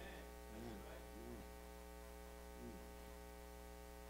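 Faint steady electrical mains hum, with a soft voice sounding briefly three times.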